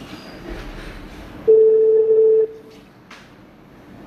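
A telephone-line beep: one steady electronic tone held for about a second, starting about one and a half seconds in, over faint line hiss.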